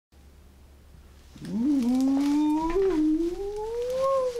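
A man's voice holding one long sung note that slowly rises in pitch, starting about a second and a half in, over a faint low hum.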